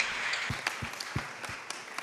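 Audience applauding, the clapping thinning and fading toward the end, with a few dull low thumps in the middle.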